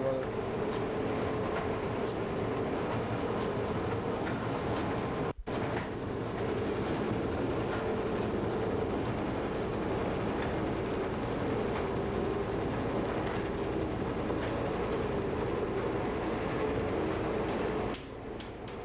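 Wire nail making machine running, a continuous mechanical clatter with a steady hum underneath and a brief break about five seconds in.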